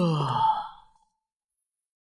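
A voiced sigh, a wordless 'mm' whose pitch falls steadily and fades out about a second in.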